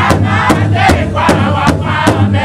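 Powwow drum group: several men singing loudly together while beating a large hide-covered powwow drum with sticks in a steady, even beat of about two and a half strikes a second.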